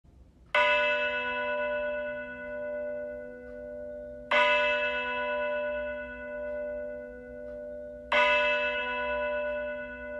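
A bell struck three times, about four seconds apart, each stroke ringing on and fading with a slow wavering in loudness.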